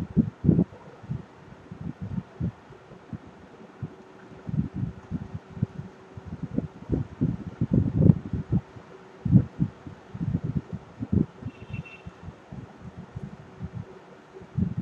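Stylus writing on a tablet screen, picked up as an irregular run of short, dull low knocks and thuds as the pen touches down and strokes. A faint steady hum sits underneath.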